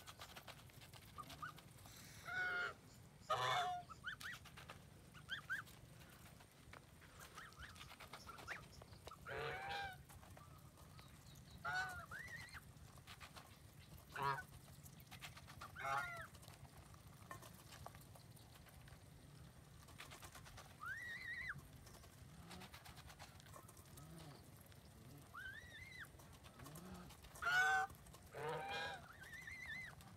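Domestic geese honking in scattered calls, about a dozen spread over the time, some in quick pairs.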